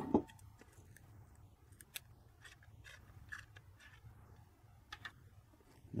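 Faint, sparse clicks and handling noises from a handheld optical power meter as its universal adapter is taken off the detector port. A short knock right at the start is the loudest sound.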